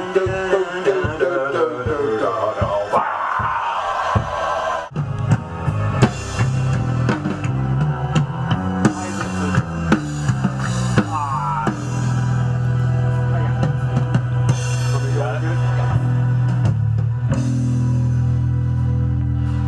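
Rock music. A wavering melodic part plays for about the first five seconds, then a drum kit and bass guitar come in together. From about the middle on, the bass holds long low notes under the drums.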